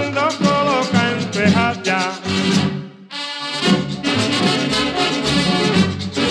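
A merengue band plays an instrumental passage with no singing and a steady, driving beat. About halfway through, the rhythm section breaks off and a single held chord sounds briefly before the full band comes back in.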